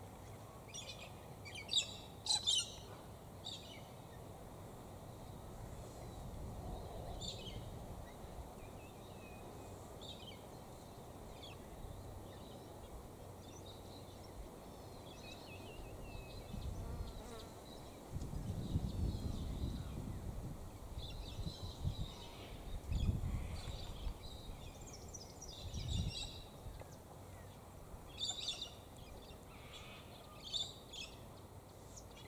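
Birds chirping and calling at intervals, loudest a couple of seconds in and again near the end. In the second half, low rumbles come and go underneath.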